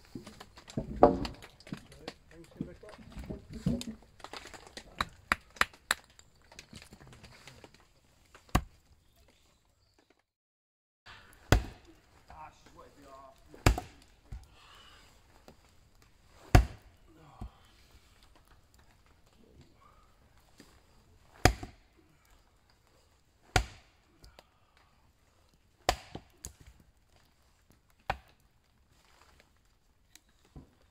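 Rapid small knocks and scrapes of a knife working small sticks of kindling, then, after a short break, an axe splitting firewood on a wooden chopping block: seven sharp chops about two to three seconds apart.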